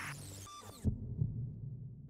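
Logo sound effect: a swoosh that cuts off just under a second in, then a double low thump like a heartbeat over a low hum, fading away.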